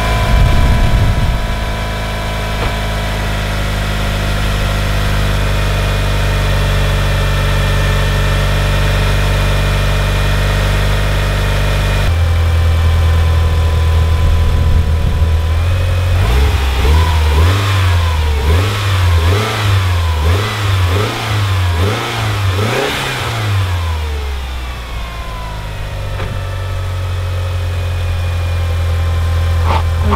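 Mitsubishi Lancer Evolution VIII's turbocharged 4G63 four-cylinder engine idling steadily, freshly started after an oil cooler replacement. Past the middle it is revved in a run of short throttle blips about a second apart, then it settles back to idle.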